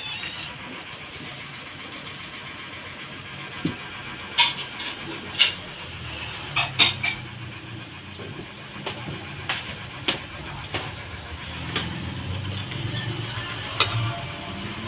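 Metal ladle clacking and scraping against an aluminium wok while stir-frying vegetables, in irregular sharp knocks, most of them from about four seconds in, over a steady hiss and low hum from the stove.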